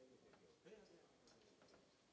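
Near silence: faint, distant voices with a few small clicks.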